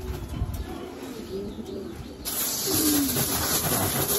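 Domestic pigeons cooing in their cages; a little past halfway a garden-hose spray nozzle opens and a steady hiss of spraying water starts suddenly and takes over.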